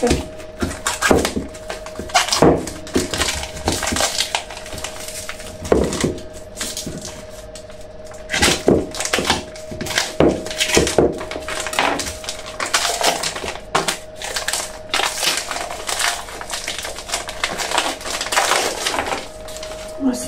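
A plastic bag crinkling and crackling in irregular bursts as it is handled and pulled off a raw coiled sausage. A faint steady hum runs underneath.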